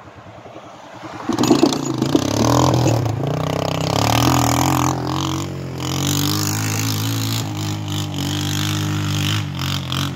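Polaris Magnum quad's engine running, getting suddenly louder with a few knocks about a second in, then holding a steady pitch.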